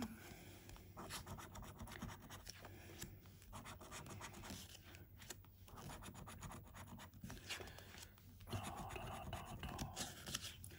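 A coin scratching the coating off a paper scratchcard, in quiet, irregular short scrapes.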